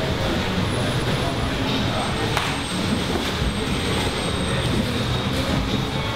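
Busy grappling-gym din: indistinct voices over a steady rumbling room noise, with a few sharp knocks from bodies and hands on the mats.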